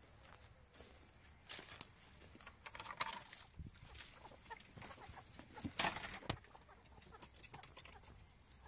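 Backyard chickens clucking in short, scattered calls, with a few clicks and rustles between them.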